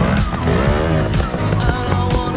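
Background rock music with a steady beat, with a Beta trials motorcycle's engine revving up and back down once under it, about half a second in.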